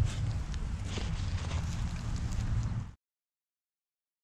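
Rustling and crackling of soil and dry leaves as a dug hole is pushed closed by hand, over a steady low rumble. The sound cuts off abruptly about three seconds in, leaving silence.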